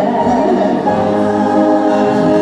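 Two women and a man singing together in harmony into microphones, holding sustained notes.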